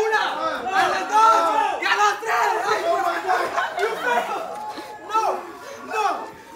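Several young men's voices yelling and shouting over one another as they scuffle.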